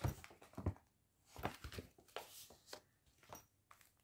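Faint handling noise of a small zip pouch: scattered soft rustles and light clicks as it is turned over and opened.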